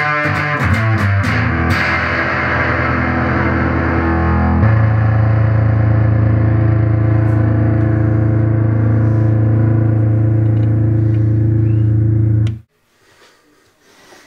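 SG electric guitar played through a Henretta Engineering Purple Octopus octave fuzz pedal switched on. A few seconds of picked fuzz notes, then one sustained fuzz tone rings for about eight seconds and is cut off suddenly near the end.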